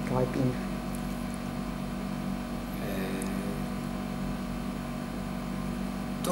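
A pause in talk filled by a steady low electrical hum, with a word spoken at the very start and a faint voice about halfway through.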